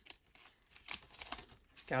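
Strips of tape being peeled off a clear plastic card sleeve, with the plastic crinkling: a run of short tearing and crackling sounds, loudest about a second in.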